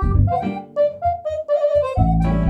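Accordion starting an instrumental tune: a melody of short stepped notes over low bass notes, with the fuller band coming in at the very end.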